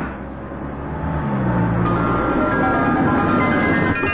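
Several Hindustan Ambassador cars driving in on a dirt drive: a steady rush of engine and tyre noise. Film-score music comes in under it about a second in and builds toward the end.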